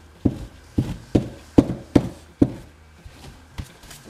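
Small bottle of weathering pigment powder being tapped to shake powder out onto the fabric: six muffled taps about half a second apart, then a faint one near the end.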